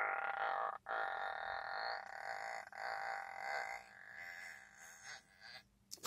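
A woman's wordless voice held in long drawn-out notes, broken by a short gap about a second in, and growing fainter over the last two seconds.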